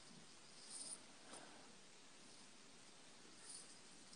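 Near silence, with a couple of faint, brief scratches of a pen on grid paper, about a second in and again near the end.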